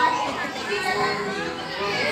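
Children's voices and general chatter, with no music: a held note of the song ends right at the start.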